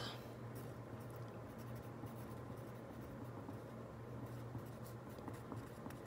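Mechanical pencil writing on lined notebook paper: faint, irregular scratchy strokes of the lead, over a steady low hum.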